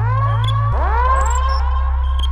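Trap beat instrumental at 137 BPM. A sustained 808 bass note drops in pitch about three quarters of a second in, under short hi-hat and percussion ticks and a layered synth line of upward-swooping notes.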